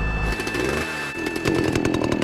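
A low rumble cuts off just after the start. A chainsaw then runs, its pitch sweeping down and back up, and settles into a rapid, even putter in the second half.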